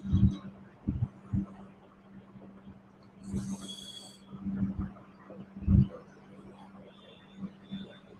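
Open conference-call microphone picking up scattered low thuds and rustles of someone moving, over a steady low electrical hum. A brief high-pitched tone sounds a little over three seconds in.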